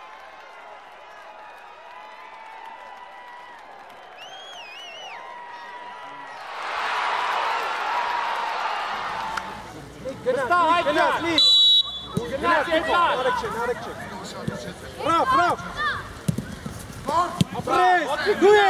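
Players and coaches shouting across an outdoor football pitch, short calls coming thick and fast from about ten seconds in. Before that the pitch is quieter, with a few seconds of rushing noise just past the middle.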